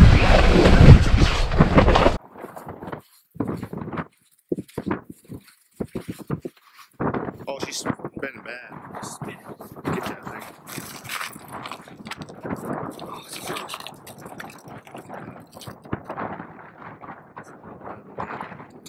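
Loud rushing wind noise on the microphone for about two seconds, which cuts off suddenly. It gives way to quieter outdoor sound with faint, indistinct voices.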